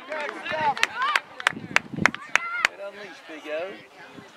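Voices shouting across an outdoor soccer field, with a run of about eight sharp hand claps, roughly three a second, starting about a second in.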